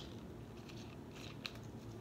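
Plastic screw cap being twisted onto a Mountain Dew Major Melon soda bottle: a few faint clicks and ticks from the cap, with one sharper click about one and a half seconds in.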